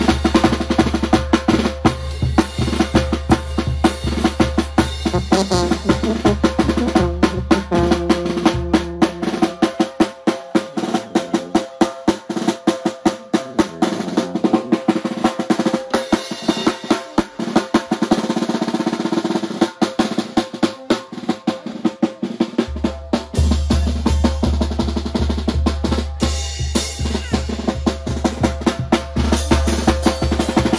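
A Mexican banda plays a fast rhythm led by its drums: rapid snare strokes and rolls, with a bass drum and mounted cymbal, over a sousaphone bass. The deep bass drops out from about 9 to 23 seconds in, leaving the snare and higher parts.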